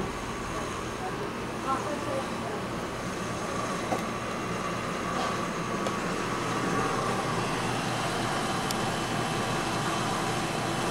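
Steady background noise, even and unbroken, with faint distant voices and a couple of light clicks.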